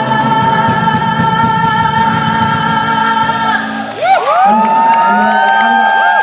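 A male vocal trio and band hold a final chord, which ends about three and a half seconds in. The audience then breaks into whoops and cheers, with some clapping.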